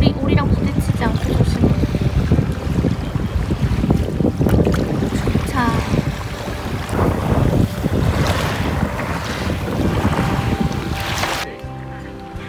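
Wind buffeting the microphone over water lapping around an inflatable packraft drifting through shallow lake water. A short high call about six seconds in.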